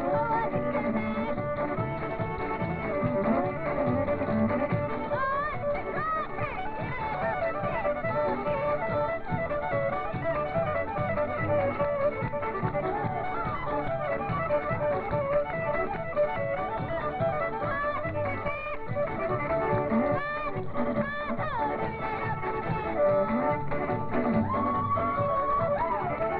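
Country string band with fiddles playing a lively square-dance tune.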